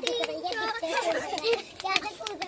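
Young children's high voices talking and calling out while skipping rope, with several sharp ticks of the rope striking the concrete.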